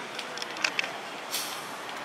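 Steady city street traffic noise, with a few faint clicks and a short hiss about one and a half seconds in.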